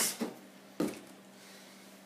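A single short sharp knock a little under a second in, a plastic water bottle being handled against the compressor cooler box; otherwise only a faint low steady hum.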